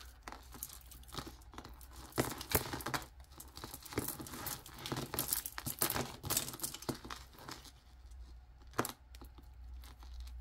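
Metal necklace chains and glass beads clicking and rustling as they are handled and untangled on a tabletop: a run of irregular small clicks with no steady rhythm.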